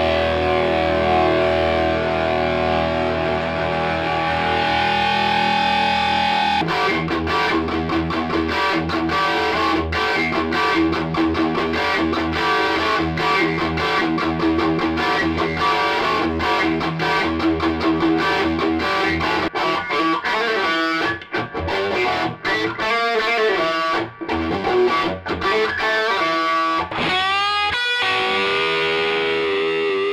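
Distorted electric guitar, a Gibson Les Paul played through a cranked Marshall JCM800 Model 4010 50 W 1x12 combo with a Celestion G12H-100 speaker, preamp at 10 and master at 8. It opens with sustained ringing chords, switches about six and a half seconds in to fast, choppy riffing with a few short stops, and ends on a long held note with vibrato.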